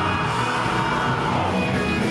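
Live ska band playing loud: trumpet, saxophone, electric guitar and drums together.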